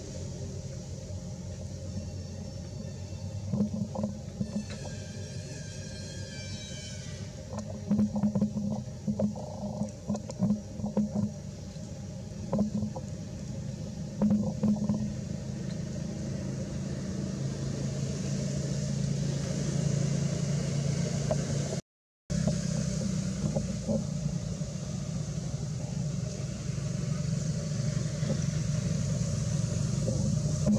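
Steady low mechanical rumble, like an engine running nearby, with scattered light clicks and rustles. About five seconds in there is a short run of high chirps, and the sound drops out completely for a moment past twenty seconds in.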